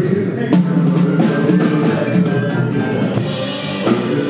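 Live rock-and-roll band playing, with a drum kit keeping a steady beat under sustained bass and electric guitar notes.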